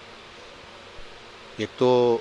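Steady low room hiss in a pause between a man's words, with a faint click about a second in; he starts speaking again near the end.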